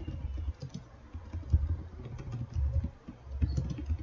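Computer keyboard typing: an irregular run of dull keystrokes as a search query is typed.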